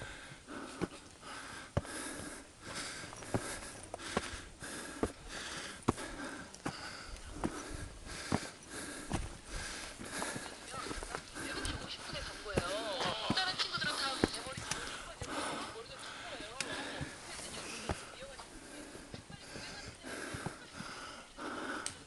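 Footsteps of hikers on a rocky, snow-dusted mountain trail, a step about every half second, with people's voices talking indistinctly, clearest a little after halfway.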